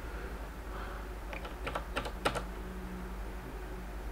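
Computer keyboard keystrokes: a quick run of about six key clicks starting about a second in, then nothing but low room hum.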